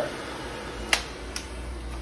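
Two sharp clicks about half a second apart, the plastic parts of a Sebo D4 canister vacuum's wand and floor tool being handled, over a faint low steady hum.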